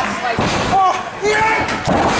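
Wrestlers' bodies slamming onto the ring mat: a heavy thud about half a second in and another near the end, with the crowd shouting over them.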